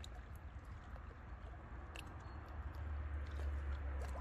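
Small lake waves lapping and splashing against shoreline rocks, with scattered little splashes and a low wind rumble that strengthens about three seconds in.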